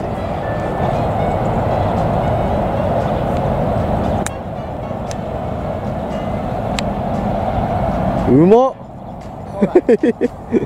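A steady outdoor rumble, then about eight and a half seconds in a loud rising cry of excitement from the golfers as the chipped ball runs up close to the hole.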